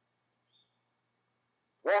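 Near silence: a pause in a man's sermon, with his voice through a microphone returning near the end on a single word.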